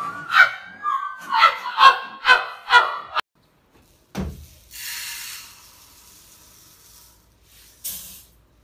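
Music with short pitched notes about two a second cuts off abruptly about three seconds in. After a single thump, liquid poured from a plastic jug gives a hissing splash for about a second.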